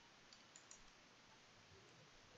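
Near silence: faint room tone with a few soft clicks in the first second.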